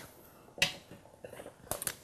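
Short, sharp clicks: one about half a second in, then a quick run of three or four near the end.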